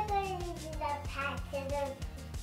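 A toddler's high, sing-song voice asking a question, over background music with a steady beat.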